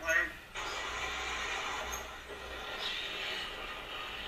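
Steady rushing noise of a motorcycle ride heard from the rider's own camera, following the tail of a spoken word about half a second in.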